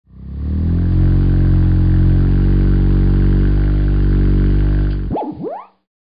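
A deep, loud sustained tone with many overtones, held steady for about five seconds, then breaking into a few quick swooping slides in pitch that cut off just before the end.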